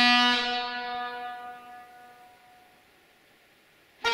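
The end of a held vuvuzela note: the low, buzzing blast stops about a third of a second in, and its echo in the railway tunnel dies away over about two seconds. Near silence follows until a new blast starts right at the end.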